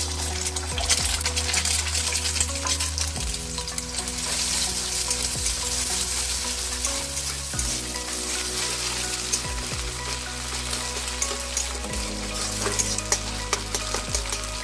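An egg sizzling as it drops into hot oil in a metal kadai, then frying with a steady hiss. A spatula scrambles it, scraping against the pan again and again.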